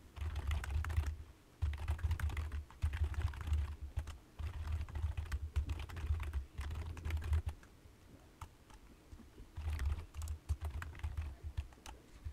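Typing on a computer keyboard in bursts of rapid keystrokes, with a pause of about two seconds before a last short burst.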